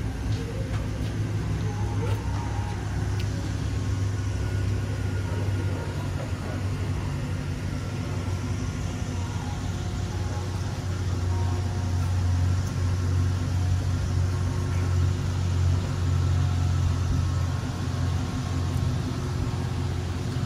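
A vehicle engine idling with a steady low hum, which grows louder about halfway through.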